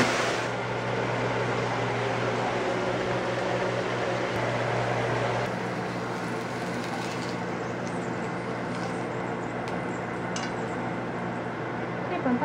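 Steady hiss with a low hum from beef frying in a frying pan, easing a little about halfway through. In the second half come a few faint clicks of long cooking chopsticks against the pan and plate.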